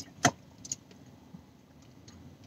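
A sip of water from a stainless steel bottle: a sharp click about a quarter second in and a couple of faint clicks after, over quiet car-cabin room tone.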